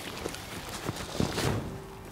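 Faint, scattered knocks and rustles of fishing tackle being handled as a landing net holding a small carp is drawn in to the seat box, with a few slightly louder knocks about a second and a half in.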